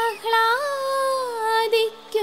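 High voice singing a devotional song: a long held note that rises a little about half a second in and slides slowly back down, then a few short notes, over steady low accompaniment notes.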